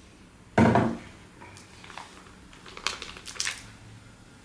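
Paper bag of casting powder crinkling and rustling as it is handled and tipped over a bucket, with a short, louder thump about half a second in.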